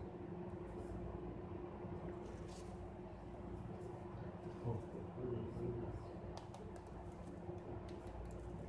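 Quiet room with a steady low hum throughout. A brief soft pitched sound comes about halfway through, and a few faint clicks of handling follow near the end.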